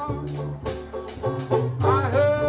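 A small hot jazz band playing a spiritual live, with a sliding melody line over held bass notes.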